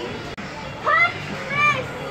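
A child's voice calling out twice in short, high-pitched cries, about a second in and again just after one and a half seconds, over store background music and murmur.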